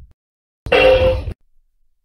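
A single kick-drum hit on a $10 plastic toy drum kit, played for a soundcheck. It is one pitched sound about two-thirds of a second long, starting a little over half a second in and cutting off abruptly.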